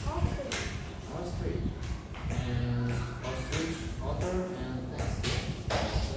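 Speech: voices talking indistinctly, with one drawn-out voiced sound a little past two seconds in.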